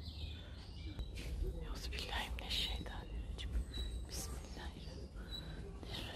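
Quiet whispered speech over a steady low rumble, with a few short, high bird chirps in the second half.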